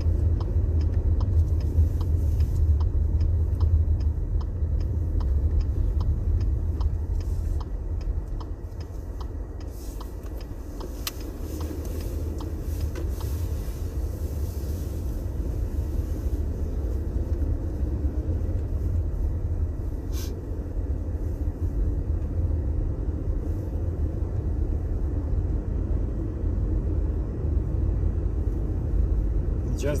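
Cabin noise of a Skoda Octavia 2.0 TSI driven slowly on snow on studded Nokian Hakkapeliitta 10 tyres: a steady low rumble from engine and road, without the stud hum heard on asphalt. A light regular ticking runs through about the first third.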